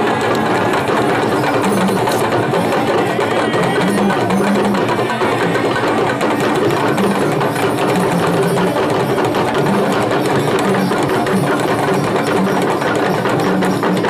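Traditional West African drum ensemble playing a fast, dense rhythm of sharp, woody strokes, with short pitched drum tones recurring underneath.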